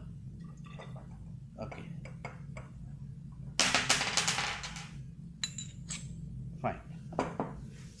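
Acid poured from a glass bottle into a glass graduated cylinder: a splashing pour lasting about a second and a half midway, followed by a few light clinks of glass on glass. A steady low hum runs underneath.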